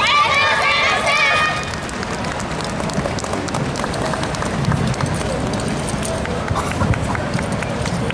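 Several voices calling out loudly together for about a second and a half. Then the general noise of people on an open plaza follows, with scattered footsteps and short voices.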